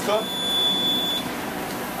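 Menumaster MCE14 Jetwave combination microwave oven's end-of-cycle beep: one steady, high-pitched tone about a second long, signalling that the cook cycle is done.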